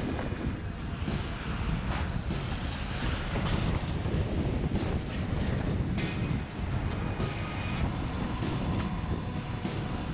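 Wind buffeting the microphone of a camera on a moving bicycle, a steady low rumble throughout, with music playing.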